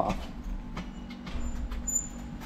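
Electric bike's motor humming steadily as its throttle handle is gripped, with low rumble and a few light knocks as the heavy bike is handled on stairs.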